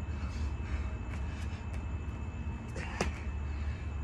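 A person doing a burpee on an exercise mat over concrete: a few soft taps, then one sharp thump about three seconds in as hands or feet land, over a steady low hum.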